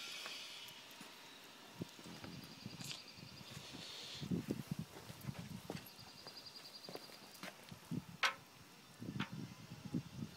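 Soft footsteps on paving stones and faint handling knocks, irregular and quiet, with two short high trills in the background.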